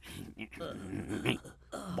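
Wordless vocal sounds from a cartoon character's voice, in a few short bursts.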